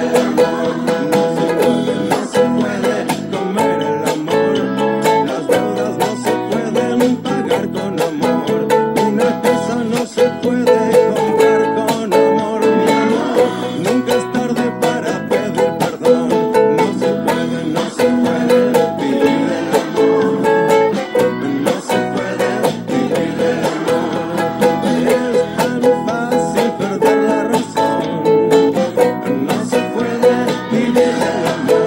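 Ukulele strummed in a steady rhythm, with muted percussive chucks between the strokes, cycling through the E, A and B chords.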